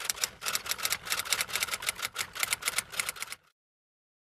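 Typewriter sound effect: a rapid run of key clicks, about ten a second, that cuts off about three and a half seconds in.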